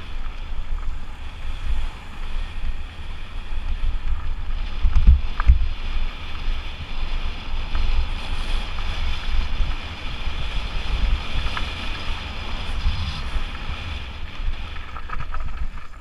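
Wind buffeting a helmet-mounted GoPro's microphone as a Lapierre Spicy 327 mountain bike rolls fast downhill over gravel, tyres crunching on loose stones, with a couple of sharp jolts about five seconds in.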